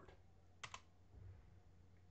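Two quick keystrokes on a computer keyboard, close together about two-thirds of a second in, entering a command in a terminal. The keystrokes are faint, over a steady low hum.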